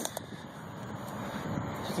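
Steady rushing outdoor background noise that slowly swells, with a few faint clicks near the start.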